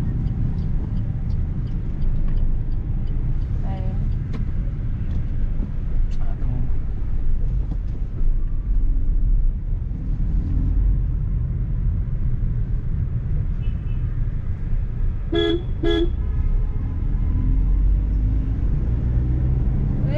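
Steady low engine and road rumble inside a Suzuki Ignis car moving through town traffic, with two short car-horn toots about half a second apart roughly three-quarters of the way through.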